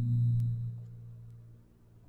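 A low, steady droning tone with a few overtones, fading away over about a second and a half, with a faint click about half a second in.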